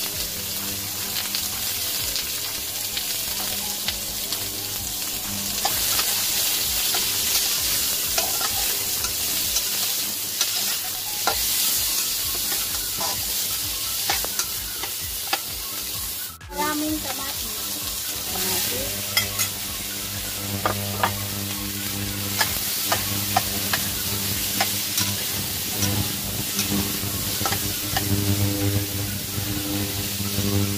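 Onion, ginger and garlic, later joined by tomato, sizzling as they sauté in oil in a wok, with a spatula stirring and scraping against the pan in frequent short clicks. A faint steady low hum runs underneath.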